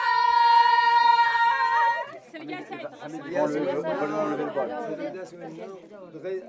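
A high-pitched voice, likely a woman's, holds one long, steady note and breaks off about two seconds in. Then several people chatter over one another.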